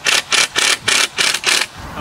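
Cordless drill driving a screw into wood, in six quick bursts about four a second that stop short of two seconds in.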